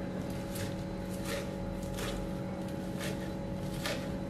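Kitchen knife chopping fresh fenugreek (methi) leaves on a plastic cutting board: irregular sharp chops about one or two a second, over a steady low hum.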